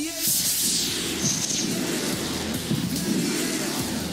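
Model rocket launch: the rocket motor ignites about a quarter second in with a sudden rushing whoosh that is loudest for about a second, then thins as the rocket climbs, over background music.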